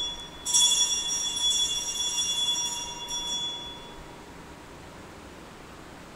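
Altar bell ringing at the elevation of the consecrated host: one ring cut short, then a second, longer ring from about half a second in that dies away by about four seconds in.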